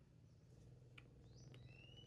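Near silence: a faint low background hum, with a couple of faint ticks and a faint thin high-pitched tone starting near the end.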